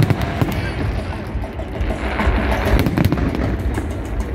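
Aerial fireworks display going off: a rapid, irregular series of bangs and crackles over a continuous low rumble.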